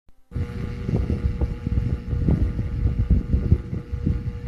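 Uneven low rumbling noise with irregular swells, under a faint steady hum.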